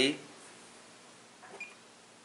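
A few faint short clicks about one and a half seconds in, from a Fluke 115 multimeter's rotary selector and test leads being handled as it is switched over; a brief spoken word comes first.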